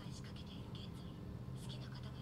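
Faint, soft anime dialogue playing quietly in the background, over a steady low hum.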